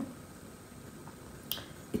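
Quiet room with a single sharp mouth click or lip smack about a second and a half in, from tasting a sip of beer.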